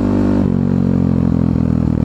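KTM supermoto motorcycle engine running steadily at low revs while rolling along slowly, with a slight dip in pitch about half a second in.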